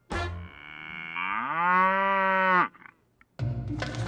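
A cow mooing: one long call that climbs in pitch about a second in, holds steady, then cuts off sharply.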